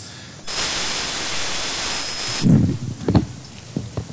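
Loud burst of static hiss from the microphone and sound system, with a thin high whine on top, lasting about two seconds and cutting off suddenly. A few faint knocks follow.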